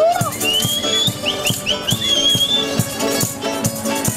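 Canarian folk string band playing: guitars, timples and laúdes strumming a steady, lively rhythm, with a high melody line gliding above it.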